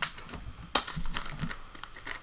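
Waxed-paper wrapper of a 1986 Donruss baseball card pack crinkling as it is peeled back and the cards are drawn out. There are sharp crackles right at the start and again about three quarters of a second in.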